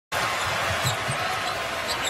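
A basketball being dribbled on a hardwood court, a low bounce about three times a second, over the steady noise of a large arena crowd.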